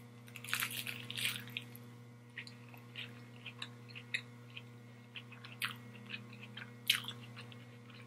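Close-up chewing of a mouthful of lettuce-wrapped burger: crunchy chewing of the lettuce bun just after a bite, denser in the first second or so, then quieter chewing with scattered small wet clicks and two sharper ones late on.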